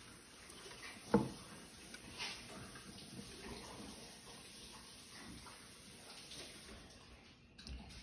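Quiet room tone with a faint steady hiss, one sharp click a little over a second in, and a few softer ticks after it.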